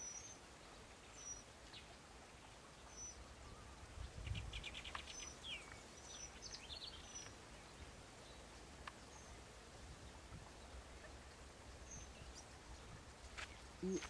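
Faint songbird calls: a short high chirp repeated every second or two, with a quick rattling trill and a couple of falling notes around four to six seconds in. A brief low rumble about four seconds in.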